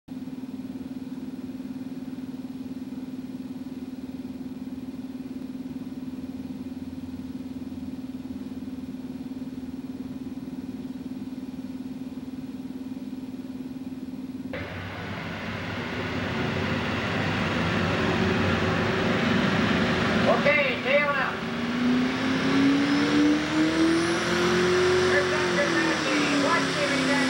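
A steady low hum for about the first fourteen seconds. Then a pro stock pulling tractor's diesel engine comes in suddenly and grows louder as it works under full load down the track. Its pitch climbs and then eases near the end.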